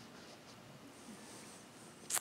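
Near silence: quiet room tone with a few faint rustles.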